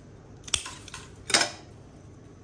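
Red-handled pruning scissors clicking and clattering: a sharp metallic click about half a second in, then a louder clatter about a second and a half in as the scissors are set down in the bonsai pot.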